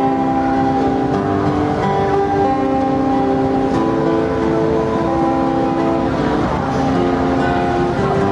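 Instrumental music with no singing: an amplified acoustic-electric guitar plays a passage of long held chord tones that change every second or so.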